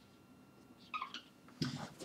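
Whiteboard marker squeaking briefly on the board as a short stroke is drawn, about a second in.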